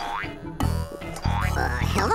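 Cartoon boing sound effects for a bouncing pogo stick: a springy rising tone near the start and again late, over light background music.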